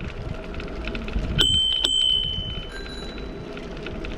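A bicycle bell rung twice in quick succession, its high ring hanging on for over a second, then a fainter ring at a different pitch from a second bell: a warning to walkers on the path ahead. Underneath is the steady low rumble of riding.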